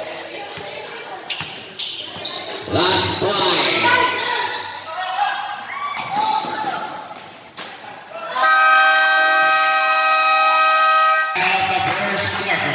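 Basketball bouncing on a hard gym court amid shouting voices. About eight seconds in, a game horn sounds one steady, loud blast for about three seconds and then cuts off.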